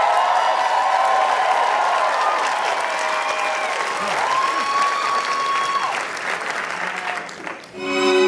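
Audience applauding and cheering, with long held whoops over the clapping. The applause dies away near the end, just as orchestral music starts.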